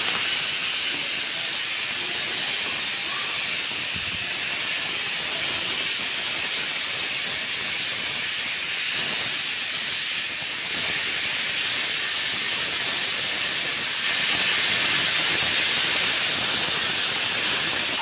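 Pressure cooker on a gas stove letting steam out through its whistle weight in one long, steady hiss, getting a little louder about fourteen seconds in.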